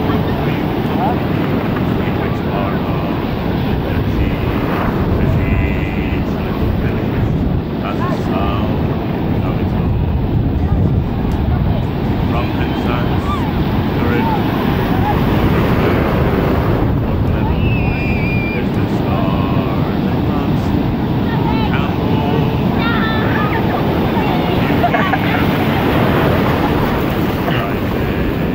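Surf breaking and rushing through shallow water in a steady loud wash, with wind buffeting the microphone. Bathers' voices call out now and then over it.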